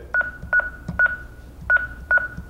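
Honeywell Lynx Touch L5100 touchscreen alarm panel giving a short, high beep at each key press as digits are keyed in. Four identical beeps, each starting with a click, come at uneven gaps of about half a second.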